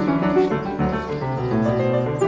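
Piano music, chords and melody notes held and changing every fraction of a second.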